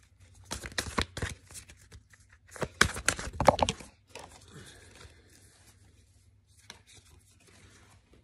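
A deck of oracle cards handled on a table: two short bursts of card edges rustling and snapping, about a second in and again about three seconds in.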